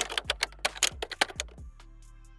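Rapid keyboard-typing clicks, a sound effect, that stop shortly before the end, over background music with low held notes.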